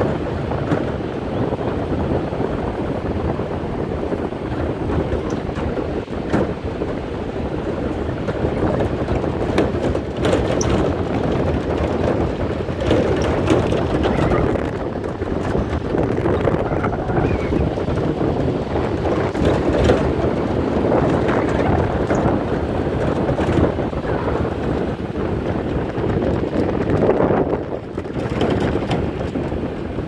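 Wind buffeting the microphone over the steady rumble of a bakkie (pickup truck) driving on a rough dirt road, heard from the open back of the truck, with scattered knocks from the bumpy track.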